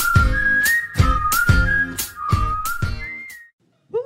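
Short intro jingle: a whistled melody over a light, steady beat with bass, ending about three and a half seconds in.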